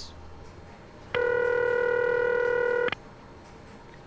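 Ringback (audible ringing) tone from a P-type ringing machine's tone alternator: a 420 Hz tone modulated by 40 Hz, which gives it a rough, buzzy edge. It sounds once for just under two seconds, starting about a second in and cutting off suddenly.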